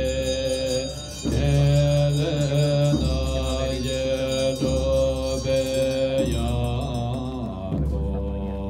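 Tibetan Buddhist monks chanting a mantra: a melodic recitation in held phrases of about a second and a half, each phrase broken by a short pause.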